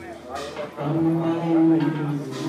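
A voice holding one long, steady low note, starting about a second in, over the murmur of people talking in a large hall.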